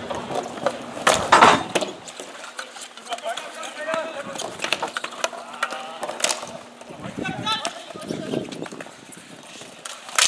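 Ball hockey play: sticks clacking against the ball and the hard rink floor in scattered sharp hits, the loudest about a second in, with players calling out now and then.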